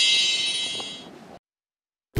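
A high, bright bell-like ding that fades over about a second and a half and then cuts off abruptly into silence.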